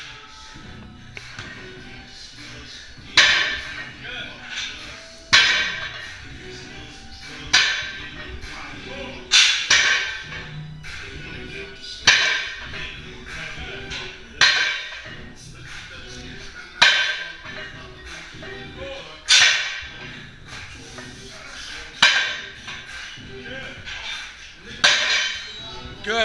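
Music playing in a gym, with a sharp swishing hit about every two seconds.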